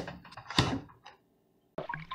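Handling noise at a refrigerator: a few light clicks and one sharp knock about half a second in as a plastic water jug is taken out. The sound then cuts out to dead silence for a moment before faint noise returns near the end.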